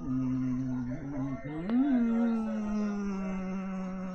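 A long drawn-out vocal sound: a steady low note, a quick rise in pitch about a second and a half in, then one long note sliding slowly down.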